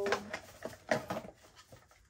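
Unboxing sounds: a cardboard box and plastic wrapping rustling and knocking as a phone stand is pulled out, with a few sharp clicks, the loudest just after the start and about a second in.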